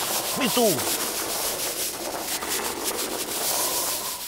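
Curling broom scrubbing rapidly back and forth on ice, a steady scratchy hiss made of quick strokes.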